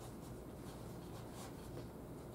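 Chalk writing on a chalkboard: a run of faint, short scratching strokes as words are written.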